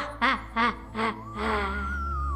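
A child's mock evil laugh: a run of short pitched 'ha' pulses, about three a second. Background music comes in under it, a low bass and then a long held tone about one and a half seconds in.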